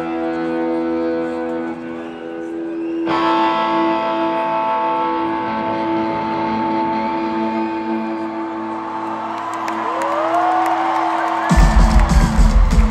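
Live rock band intro over a stadium PA: sustained, droning guitar chords ring on, shifting to a new chord about three seconds in. Near the end gliding cries rise over it, and just before the end the full band comes in hard with drums.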